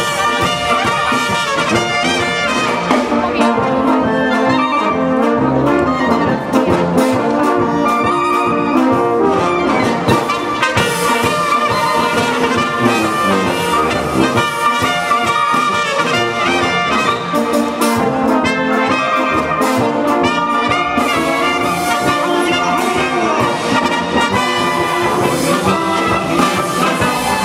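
Folk brass band (dychová hudba) playing an instrumental passage, with clarinets and trumpets carrying the tune over baritone horns and tuba.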